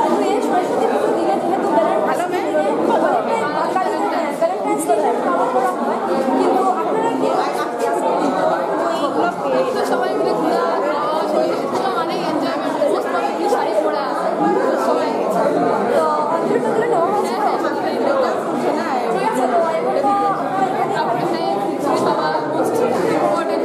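Several voices talking over one another: continuous chatter with no pause.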